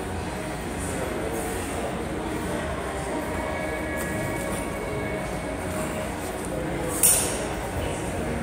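Steady gym room noise, then a single sharp clink as heavy dumbbells knock together while being lifted off the rack, about seven seconds in.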